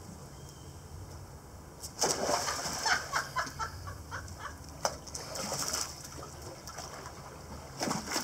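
A small dog jumping into a swimming pool with a loud splash about two seconds in, followed by water splashing and sloshing as she paddles.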